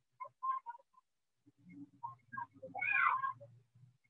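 Short pitched chirping calls from an animal, repeated several times, then a longer, louder call about three seconds in.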